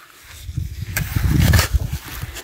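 A spade driven into sandy, stony soil: a sharp scrape about a second in, with a low rumble that swells and fades over about a second as the blade works into the ground.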